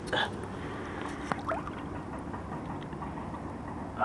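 Water sloshing over a steady outdoor background as a pike is let go back into the lake, with a short splash just after the start and a few small splashes about a second in.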